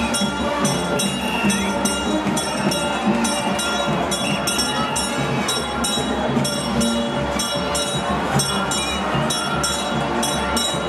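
Large crowd cheering and acclaiming over music, with a steady beat of about three a second running through the din.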